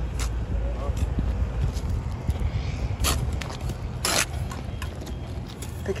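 Steel brick trowel scraping mortar on concrete blocks, two short scrapes about three and four seconds in, over a steady low rumble.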